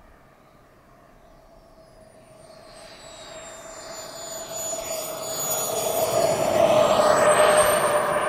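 Model jet turbine of a Skymaster F-18C Hornet RC jet on landing approach. Its high whine grows steadily louder as the jet comes in, dips in pitch and then rises again, and is loudest about seven seconds in, near touchdown.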